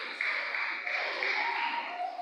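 Steady background hubbub of a large hall, with faint indistinct voices and no clear voice in front.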